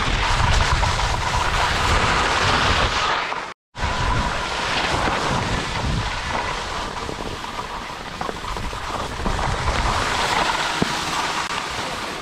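Wind rushing over a GoPro's microphone while skiing, with skis scraping and sliding on packed snow. The sound drops out for an instant about three and a half seconds in, then carries on the same.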